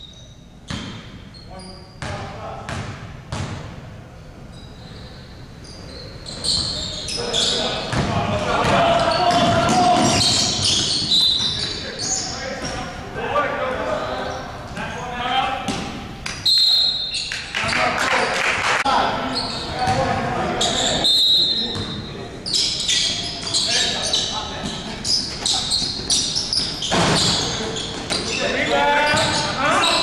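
A basketball bouncing on a hardwood gym floor, echoing in a large gym: a few separate sharp bounces in the first few seconds, then indistinct shouting voices from about six seconds in, louder than the bounces.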